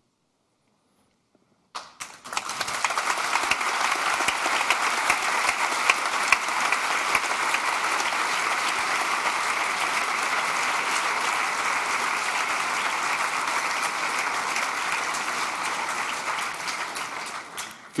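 A large audience applauding in a lecture hall. It starts suddenly about two seconds in, holds steady for about fifteen seconds, and fades out near the end.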